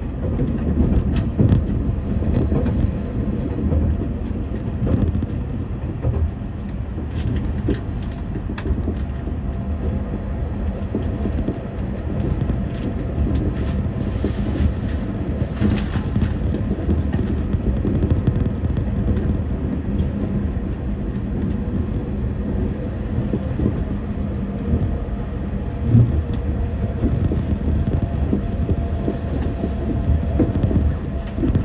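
Train running on rails: a steady low rumble from the wheels with scattered clicks and knocks from the track, a brief hiss about halfway through, and a sharper knock near the end.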